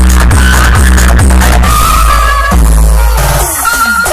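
Electronic DJ dance music played very loud through a large stacked DJ speaker system, with a heavy bass beat about twice a second. About halfway through, the bass drops out into a break with falling synth sweeps.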